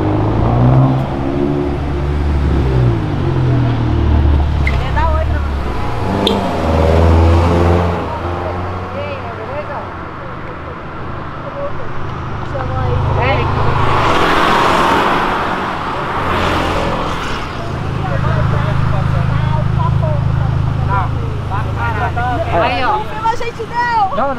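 A Volkswagen Jetta GLI's turbocharged four-cylinder engine accelerating hard, its note rising and falling repeatedly, loudest as the car goes by about fourteen seconds in.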